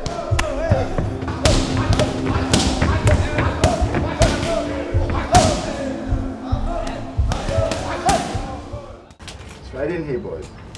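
Kicks and punches smacking into Thai pads and a belly pad, a sharp strike every half second to a second at an uneven pace, with short shouts alongside several strikes, over background music with sustained tones. The strikes fade out shortly before the end.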